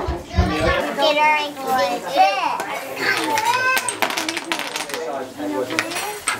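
Young children's high-pitched voices calling out and chattering as they play, with a quick run of clicks about four seconds in.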